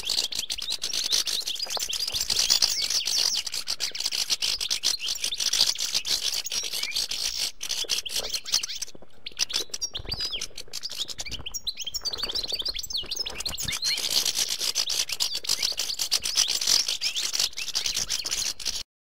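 European goldfinches twittering and singing: a dense run of rapid, high chirps and trills that thins out for a few seconds midway, then fills in again.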